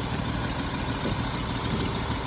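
2010 Jeep Wrangler's 3.8-litre V6 idling steadily with a misfire: cylinder 2 gets no spark, which looks to the mechanic like a failed coil driver in the engine computer.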